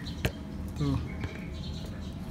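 A single sharp click from a hand handling the horn's plastic wiring connector, over a low steady rumble.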